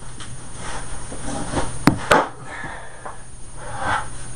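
Rustling and light knocking of a person moving about and handling things, with two sharp clicks close together about two seconds in, over a low steady hum.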